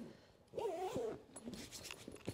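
A short wavering whine-like call about half a second in, then a few light clicks and rustles from handling and zipping a fabric carry bag.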